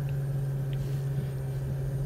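Steady low hum inside a stationary car, from the running car.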